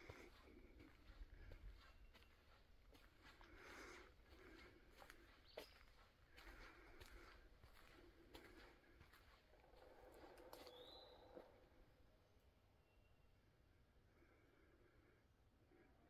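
Near silence: faint footsteps on a dirt forest trail, soft scuffs every second or two, with a single short rising chirp a little before the eleventh second.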